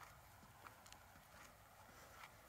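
Faint footsteps on a paved path, a light tap about every half second, over a quiet outdoor hush.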